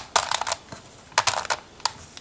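Plastic pieces of a Pyraminx Crystal puzzle clicking and clacking as its faces are turned by hand, in a few short bursts of clicks, one near the start, one about a second in and one near the end.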